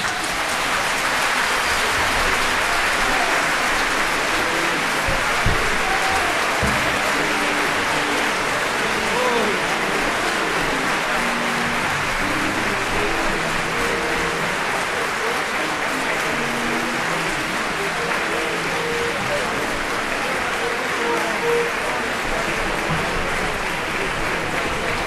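Opera-house audience applauding steadily at the end of an act, with scattered shouts among the clapping.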